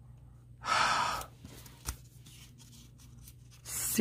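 A woman's exasperated sigh about a second in, at a mistake she has just made, then a single light click and a breath drawn in near the end.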